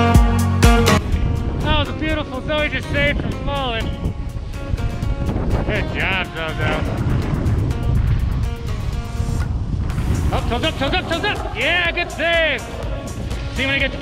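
Background music that stops suddenly about a second in, followed by a steady rumble of wind on the microphone and a snowboard sliding over snow, with high, wavering voice-like sounds over it.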